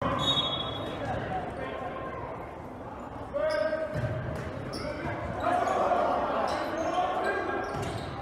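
Live volleyball rally in a gymnasium: players and spectators shouting and calling out over a steady crowd din, with sharp thuds of the ball being hit, all echoing in the hall.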